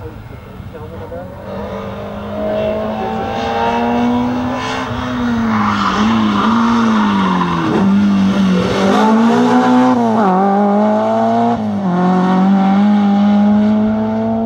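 BMW E30 rally car engine at full throttle, its pitch rising and dropping several times through gear changes and lifts as it comes nearer and gets louder, with tyre noise as the car slides through a bend about halfway through.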